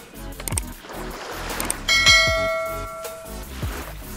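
Background lo-fi music with a steady drum beat, and about two seconds in a bright bell chime that rings for about a second and a half before fading: the notification-bell sound effect of a subscribe-button animation.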